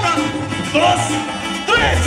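Live regional Mexican band music: sousaphone bass notes and congas, with short swooping high lines over them about three times.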